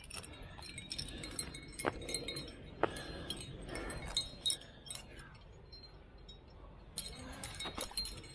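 Carabiners and cams on a climbing harness rack clinking and jangling irregularly as the climber moves up a crack. The clinks come thick for the first few seconds, thin out for about two seconds, then bunch together again near the end.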